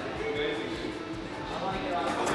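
A man's voice, brief and quieter than the talk before it, over the background noise of the room.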